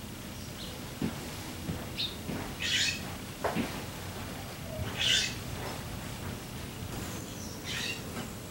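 Birds calling: short high chirps from a songbird and three louder, harsh calls about two and a half seconds apart from a raven.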